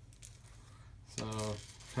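Faint clicks of small game tokens being drawn from a bag and set down on a wooden table, followed by a single spoken word.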